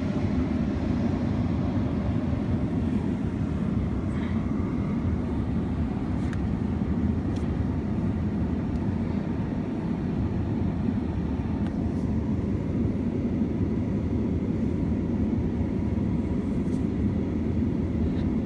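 Steady low rumble of vehicle noise, with no change in level, and a few faint ticks over it.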